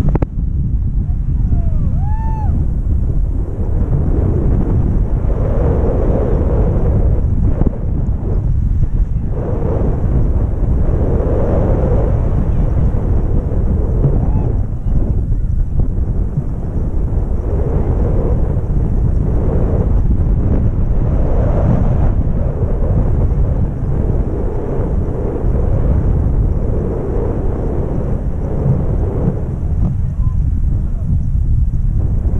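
Wind rushing and buffeting over an action camera's microphone in flight under a tandem paraglider, a loud, steady low roar.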